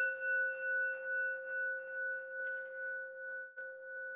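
A metal singing bowl, struck once just before, ringing on with a clear low tone and a higher overtone. The highest overtones die away in the first couple of seconds, while the main tone wavers gently in loudness as it slowly fades. It is rung as a meditation bell to call a moment of centering.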